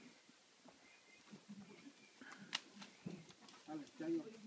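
Near silence: faint, distant voices, with one sharp click about two and a half seconds in.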